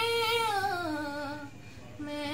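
A woman singing a noha unaccompanied, holding one long note at the end of a line that slides down in pitch and fades out about a second and a half in.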